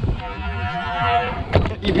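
Stunt scooter wheels rolling down a wooden skatepark ramp with a steady humming whir, then two sharp knocks near the end as the wheels come off the ramp onto the concrete.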